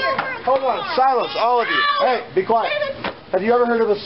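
Voices talking and calling out in rising and falling tones, with a single sharp knock about three seconds in.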